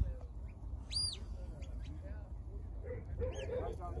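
A single high whistled note about a second in, rising then falling, over a steady low rumble of wind on the microphone; a man's voice calls "lie down" to a herding dog near the end.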